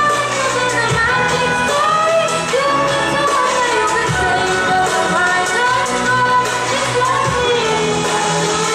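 A woman singing a gliding, ornamented melody with violin accompaniment, over a low sustained accompaniment that comes and goes.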